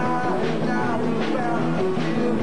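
Rock band playing live: guitar chords and a melodic line over a steady drum beat.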